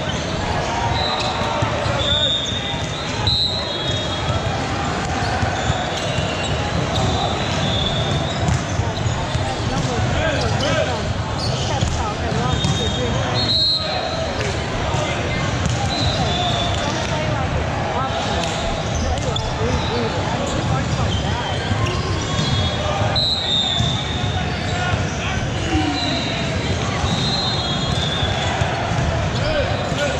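Busy indoor volleyball hall: many voices talking over each other, volleyballs being hit and bouncing, and athletic shoes squeaking on the hardwood courts. A few sharp ball hits stand out, about three seconds in, near the middle, and about three quarters of the way through.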